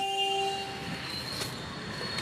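A short, steady horn-like tone sounds once at the start for under a second, then gives way to steady background noise.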